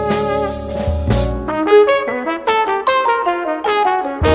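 A jazz band plays, then about a second in the rhythm section drops out and a trumpet plays a quick unaccompanied run of notes that moves up and down.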